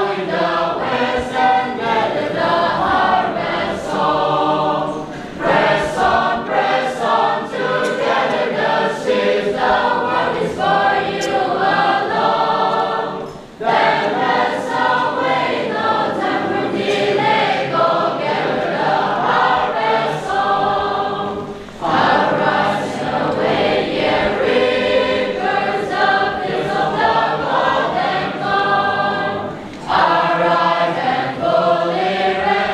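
A church choir sings a hymn during the offertory procession of a Catholic Mass. The singing goes on in phrases with brief breaks about 13 and 22 seconds in.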